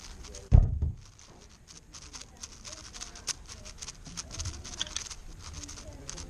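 QiYi X-Man Spark V2 7x7 speedcube being turned fast, a quick irregular run of small plastic clicks from its layers, with one dull low thump about half a second in.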